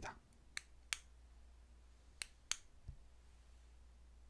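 Four faint, sharp clicks, two in the first second and two a little past the two-second mark, then a soft low thump, over quiet room tone.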